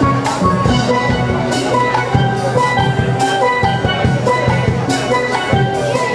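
A steelband playing live: many steel pans ring out melody and chords over a steady drum-kit beat.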